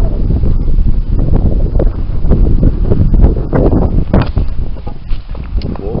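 Strong wind buffeting the camera's microphone: a loud, uneven low rumble that gusts up and down.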